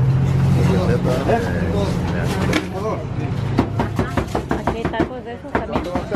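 A cleaver chopping meat on a cutting board in quick, even strokes, about four a second, starting a little past the middle.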